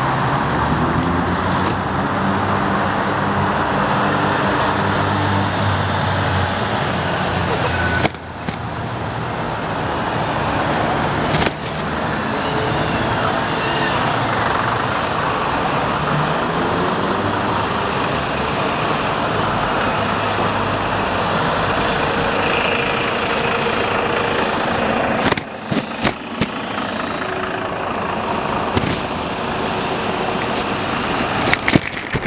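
Rush of air and road noise on a bicycle-mounted camera's microphone while riding through city traffic, with car engines passing close by. The noise drops out suddenly a couple of times, about a third of the way in and again near the end.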